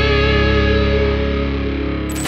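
Intro music: a held, distorted electric guitar chord with a wavering vibrato, dying away near the end.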